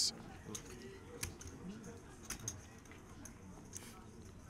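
Quiet poker-room ambience: a faint murmur of distant voices with a few scattered sharp clicks.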